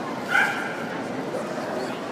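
A dog gives one short, high yip, the loudest sound, over the steady murmur of a crowded indoor hall.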